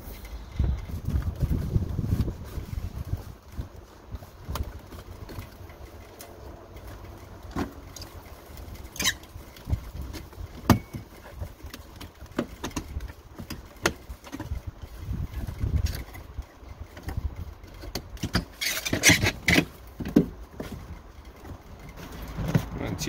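Handling noise of interior trim work: scattered clicks and knocks of plastic trim and a cable being pushed into the floor channel, with dull low bumps. A denser rustling clatter comes near the end.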